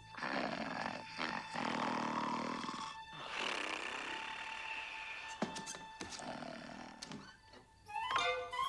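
A big cartoon dog snoring in several long, noisy breaths, each a second or two long, over soft orchestral music with a held note.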